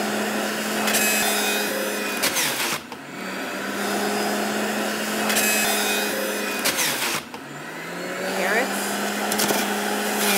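A Breville Juice Fountain centrifugal juicer runs at its highest speed with a steady motor hum while hard produce is pushed down its feed chute and shredded. There are two long grinding bursts and a third begins near the end. The motor's pitch sags briefly about three and seven seconds in as it takes the load, then recovers.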